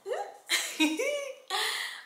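A woman giggling in a few short, breathy bursts between words.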